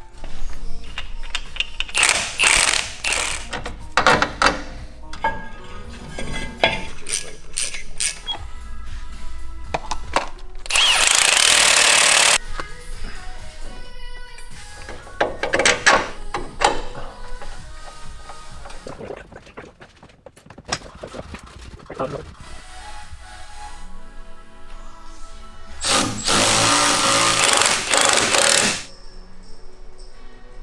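Background music over suspension work: scattered metallic clicks and knocks of hand tools on hub and knuckle parts. Two long bursts of a pneumatic tool are the loudest sounds, one about eleven seconds in and one near the end.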